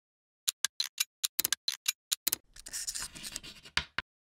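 Sound effect of an animated logo intro: a quick run of about a dozen sharp, uneven clicks, then a second or so of scratchy rustling, ending on one more click.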